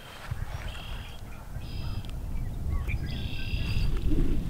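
Birds calling from the marsh: three short, high calls about a second apart, the last one the longest, with a faint wavering call between them. Underneath runs a low rumble that grows louder toward the end.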